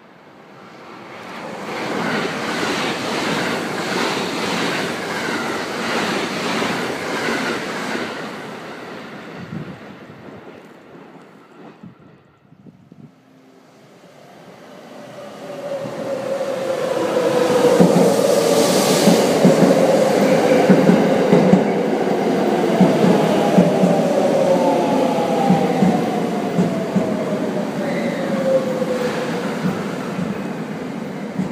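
A limited express electric train passing at speed with rhythmic wheel clatter, which fades away. After a break, a second limited express electric train rolls into a station platform, its motor whine falling steadily in pitch as it slows, over steady wheel clatter.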